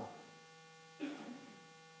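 Steady electrical mains hum, a set of constant tones, during a pause in speech, with one brief soft sound about a second in.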